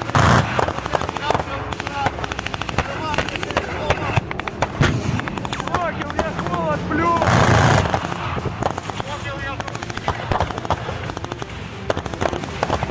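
Rapid gunfire, many sharp shots in quick succession, mixed with people's voices and shouts. A louder rushing blast comes just after the start and again about seven seconds in.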